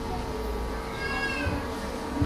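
A faint, short high-pitched cry about a second in, rising then falling in pitch, over a low room murmur and a steady hum.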